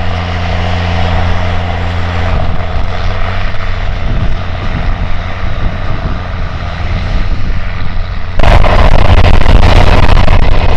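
Large tractor diesel engine running steadily under load. About eight seconds in, the sound turns abruptly louder and noisier.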